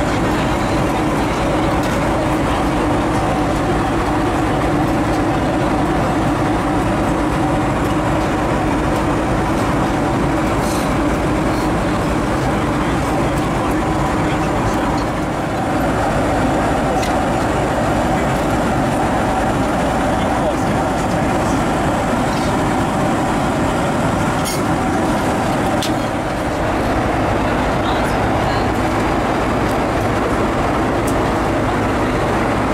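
Steady in-flight cabin noise of a Boeing 767 airliner, with indistinct voices under it.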